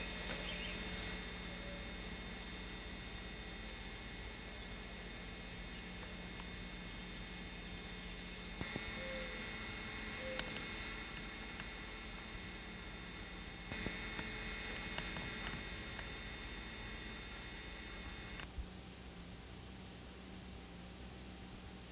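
Steady electrical hum with an even hiss from a VHS camcorder recording, broken by a few faint clicks. About eighteen seconds in there is a click, the hum drops away and only tape hiss is left as the recording gives way to blank tape.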